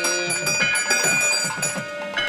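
Temple bells ringing on and on, with rapid strikes and a fast drum beat, accompanying the arati lamp offering. A chanting voice stops about half a second in.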